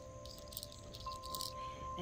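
Soft background music of sustained ringing tones, with a higher tone coming in about a second in.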